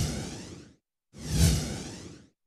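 Two whoosh sound effects from a TV logo transition. Each swells quickly to a peak with a deep low rumble under it, then fades over most of a second. The second comes about a second and a half after the first.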